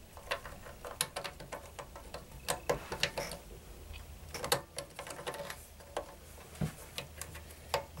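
Irregular light clicks and taps of hard plastic parts being handled and pressed together as a 3D-printed knob is fitted onto a 3D printer's control-knob shaft, over a faint low hum.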